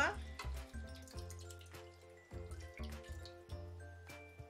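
Soft background music with a steady, repeating bass pulse, over a faint stream of evaporated milk poured from a can into a cooking pot.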